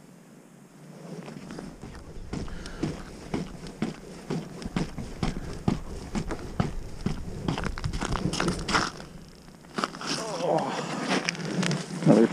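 Irregular close-up knocks, clicks and rustles of an ice angler moving about and handling his gear on the ice, starting about a second and a half in, with a brief mumbled voice near the end.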